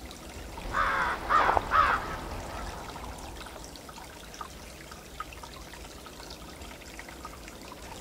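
A corvid calling three harsh caws in quick succession about a second in, over a steady faint rushing background.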